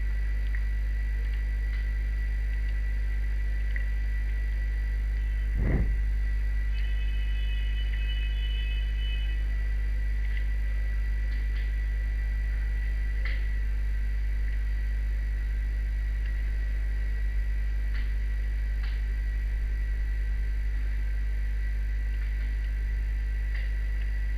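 Steady low electrical hum with a thin high whine above it, the recording line's background noise. There is a brief thump about six seconds in and a few faint clicks later on.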